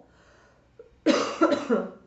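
A woman coughing, a short loud burst of a few coughs about a second in, into her hand, after a faint intake of breath.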